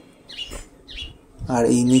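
A small bird chirping twice, two short high calls about half a second apart.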